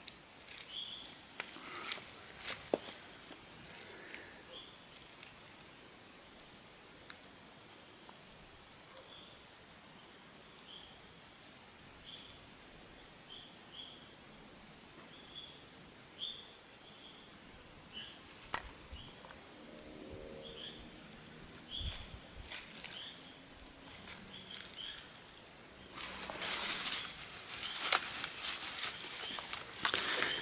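Faint short, high chirps from a small animal, repeated about once a second. Near the end comes a louder rustle of leaves and undergrowth being pushed through.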